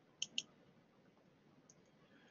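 Two quick, sharp clicks about a fifth of a second apart.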